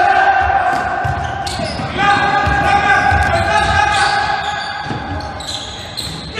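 A basketball being dribbled on a gym floor: repeated dull bounces, echoing in a large hall. Over it, voices shout in long held calls that fade near the end.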